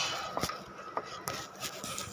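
Quiet scratching of a pencil drawing lines on paper, with a few faint short taps.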